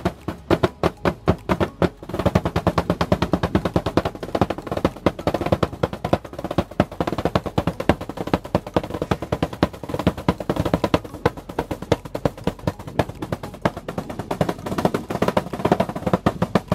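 A foil-covered drum played fast with a pair of sticks: rapid, nearly unbroken rolls of strokes, with a brief drop about two seconds in.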